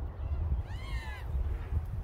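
A single drawn-out animal call that rises and then falls in pitch, lasting about half a second in the middle, over a steady low rumble.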